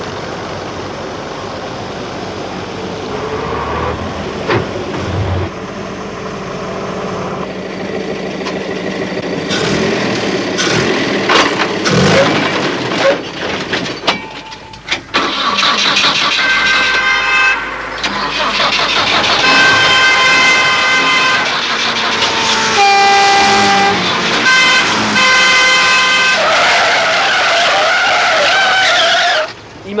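Film soundtrack of a road crash: a car running at speed, then a run of sharp crashing impacts about nine to fourteen seconds in. After a brief lull, car horns blare on and off almost to the end.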